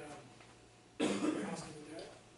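A man coughs about a second in: one sudden loud cough that fades within a second.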